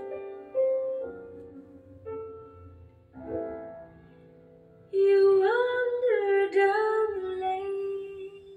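A vinyl record playing on a turntable: a song with held piano chords, then a woman's voice enters about five seconds in, holding a long note with vibrato over the piano.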